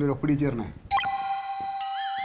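A voice briefly, then about a second in a sudden, steady electronic chime tone starts and is held, with higher tones joining near the end.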